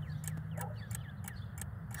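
Small birds chirping: a quick, irregular run of short, high, falling chirps and ticks over a faint low hum.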